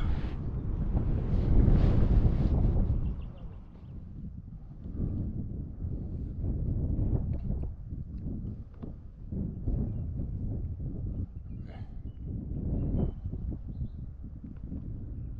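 Wind buffeting the microphone, loudest in the first three seconds, with scattered soft knocks throughout.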